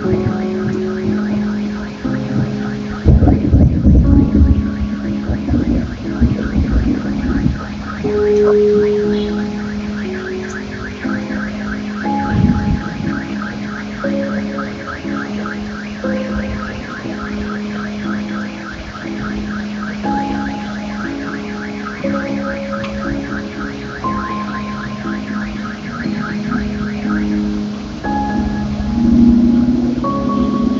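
Relaxation music with a steady low drone and slow held notes, and a fast pulsing high tone that stops near the end. Rain hisses underneath, and thunder rolls from about three to seven seconds in and again briefly around twelve seconds.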